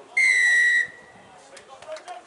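Rugby referee's whistle blown once in a single short, steady blast, stopping play at a scrum.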